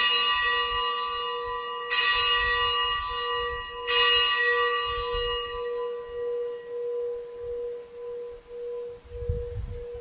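A consecration bell struck three times, about two seconds apart, each stroke ringing and fading, at the elevation of the chalice; a steady hum lingers under the strokes.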